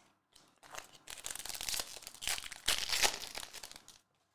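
Crinkling and tearing of a foil trading-card pack being opened by hand: a dense crackle of small clicks that swells twice in the second half.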